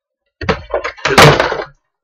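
Knocks and a loud clattering bump from objects being handled and set down on a tabletop: two short knocks about half a second in, then the loudest, rougher clatter lasting about half a second around the one-second mark.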